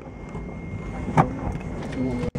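Steady low hum inside an airliner cabin, with a faint thin high whine, and one sharp knock about a second in.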